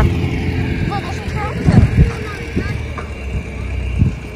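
Wind rumbling on the microphone outdoors, with a few heavier buffets just before two seconds in, and faint distant voices.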